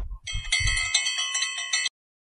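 A small bell ringing, struck several times in quick succession, then cut off abruptly just before the end.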